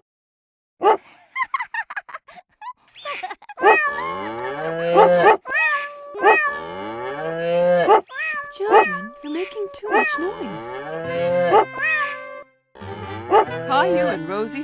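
Toy keyboard making animal sounds as its keys are pressed: a few short calls at first, then from about four seconds in a dense, noisy run of overlapping animal calls over steady held tones, which breaks off briefly near the end.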